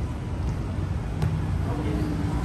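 Steady low rumble of road traffic, with a single sharp thud of a football being kicked a little over a second in.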